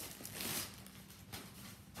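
Rustling of a collapsible fabric tote bag and its wrapping being handled and turned over, with the loudest swish about half a second in and softer ones after.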